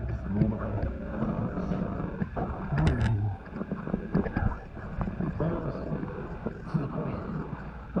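Scuffing and rustling of a person moving on sandy ground and getting up after crawling, with a low wind rumble on the microphone and a few short wordless vocal sounds.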